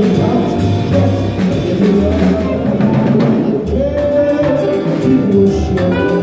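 Live jazz octet playing, with saxophone over a drum kit and cymbals and a moving low line underneath.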